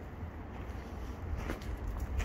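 Low wind rumble on a handheld phone microphone, with a few short crunches of footsteps on gravel about a second and a half in.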